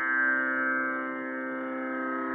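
Steady sruti drone, the sustained pitch reference that accompanies Carnatic singing, holding its notes unchanged with no voice over it.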